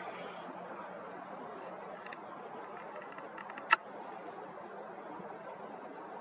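Steady background hiss with one sharp click a little past the middle, from hands working the camera as its zoom is adjusted on the Moon.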